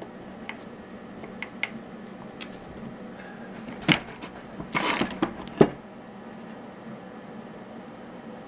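Steel bra underwire being bent over in a bench vise: scattered small metallic clicks and ticks, then a sharp crack just before four seconds in as the wire, bent too fast, cracks, followed by a short cluster of louder clicks and knocks, the last the loudest.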